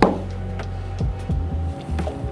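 Background music with steady held tones and a low hum, with a sharp clink right at the start and a couple of soft knocks about a second in from the barista's milk pitcher and cups.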